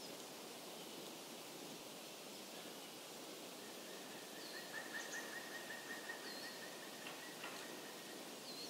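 Faint outdoor nature ambience: a steady hiss of background noise with scattered bird chirps, and a quick run of repeated chirps from about four to seven and a half seconds in.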